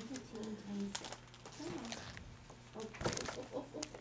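Laminated cards and a plastic-covered sheet being picked up and handled, rustling and crinkling about a second in and again around three seconds in. A short, low hummed vocal sound comes at the start.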